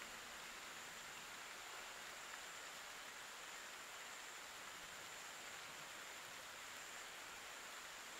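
Faint, steady outdoor background hiss with a thin, steady high-pitched tone and no distinct events.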